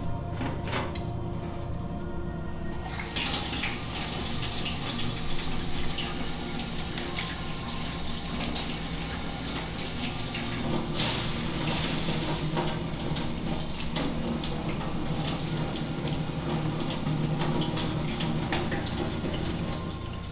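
Water from a tap and poured from a bowl splashing over a thin sheet of hammered copper foil in a steel sink. The water sound is steady, with a louder splash about 11 seconds in.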